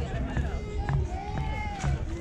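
Indistinct talk of several voices overlapping, over a steady low rumble, with a few short sharp clicks.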